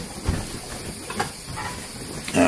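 Steady background hiss from the recording's noise floor, with a faint low knock about a third of a second in.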